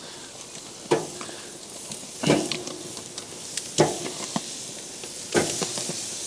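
Marinated chicken pieces sizzling on a hot charcoal grill grate, seared directly over lump charcoal. The sizzle flares up sharply four times, about every second and a half, as pieces are laid down.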